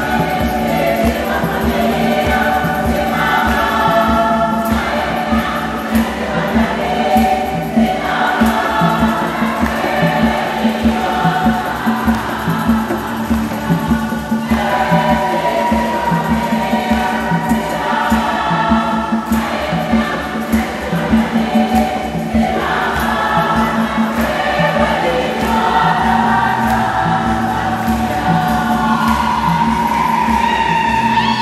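A women's choir singing a Swahili Catholic hymn in phrases over a steady beat and a sustained low accompaniment.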